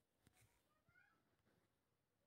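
Near silence: the sound drops almost to nothing, with only a very faint trace of something high and brief about a second in.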